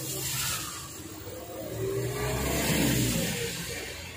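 A motor vehicle's engine going by, swelling and rising in pitch after about two seconds and then fading, over a low steady hum.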